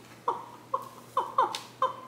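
A woman's excited squeals: five short high-pitched cries in quick succession, each falling in pitch.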